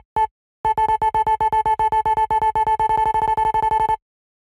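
A homemade sampled soundfont instrument in Ableton Live, played from a MIDI keyboard. After a short gap it sounds one note repeated very rapidly, about nine times a second, each note the same pitch and stopping sharply.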